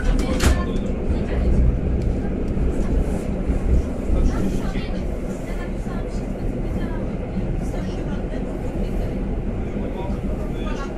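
Inside a Polish EN57 electric multiple unit running across a steel truss railway bridge: a steady rumble of wheels on rail, with scattered clicks and rattles.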